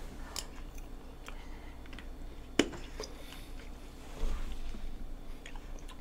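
Faint chewing and mouth sounds as two people eat spoonfuls of soft mashed avocado with sweetened condensed milk, with one sharp click about halfway through.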